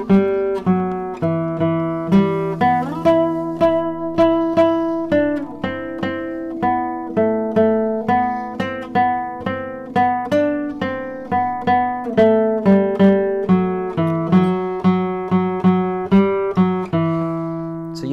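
Solo nylon-string Spanish guitar playing a thumb-picked melody on the third and fourth strings over open-string arpeggios, in a 3-3-2 rumba rhythm. A few seconds in, the melody slides up and then back down between positions.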